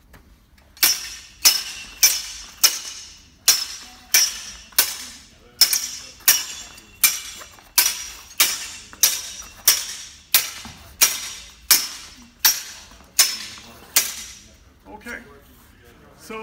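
Steel longsword blades clashing in a steady run of about twenty strikes, roughly one every two-thirds of a second, each with a short metallic ring: repeated cuts being parried blade on blade.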